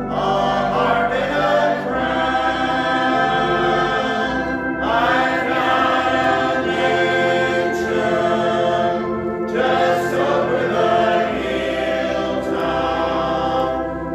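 A church congregation singing a hymn together, led by a song leader, in long held phrases that break and start again about every five seconds.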